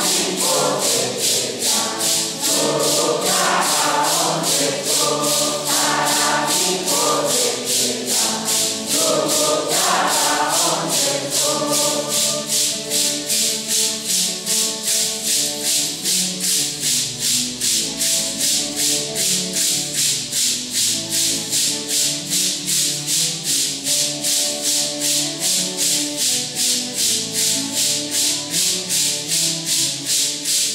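A congregation sings a Santo Daime hymn in unison while maracas are shaken together in a steady beat, a little over two shakes a second. The singing is strongest for about the first twelve seconds, then carries on more softly under the maracas.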